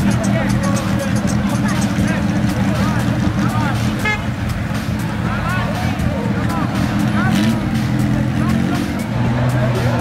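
Car engines running at low speed close by, a steady low drone, with the voices of a crowd over it.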